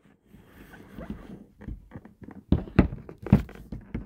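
Rustling of wrapping being pulled off a box by hand, then a few sharp knocks of handling in the second half.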